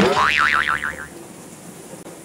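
A cartoon-style 'boing' sound effect: a springy tone that wobbles up and down about five times and fades out after about a second.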